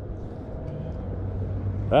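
Steady low engine hum, with the start of a man's speech and a throat-clear right at the end.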